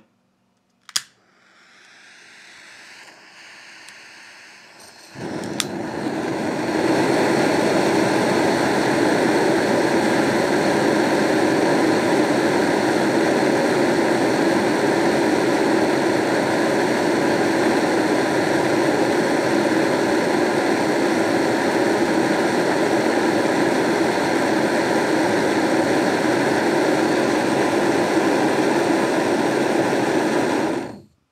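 Firebox gas burner with a titanium diffuser on a propane/butane cartridge, its regulator opened a quarter turn. A sharp click about a second in and a faint hiss follow, then the burner lights about five seconds in and settles within a couple of seconds into a loud, steady roar of flame.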